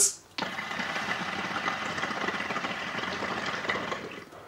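Two compact Invi Nano hookahs bubbling as both smokers take one long draw through their hoses at once. The water in the small glass bases rattles steadily from about half a second in and stops near the end.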